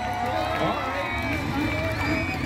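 Voices of people talking near the microphone, with a low steady rumble underneath.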